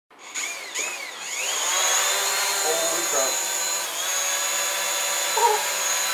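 DJI Mavic Pro quadcopter's motors spinning up with a wavering, rising and falling whine as it lifts off, then settling into a steady high-pitched propeller whine as it hovers.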